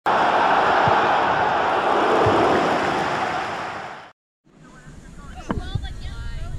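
A loud, steady rushing noise like surf or wind, the sound effect of an animated logo intro, fading out and cutting to silence at about four seconds. It gives way to quieter open-field sound with distant children's voices and a single thump.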